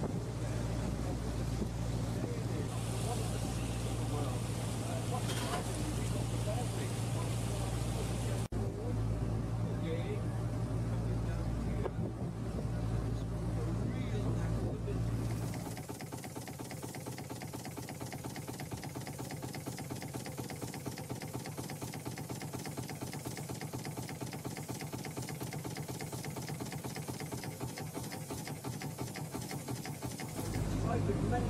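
Steady low drone of a passenger boat's engine, with wind on the microphone. About halfway through it cuts to a quieter, thinner steady sound without the deep rumble.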